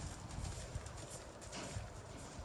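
Faint hoofbeats of a horse cantering on dirt arena footing, dull low thuds.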